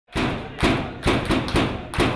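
Logo intro sound effect: a run of heavy thuds, about two or three a second.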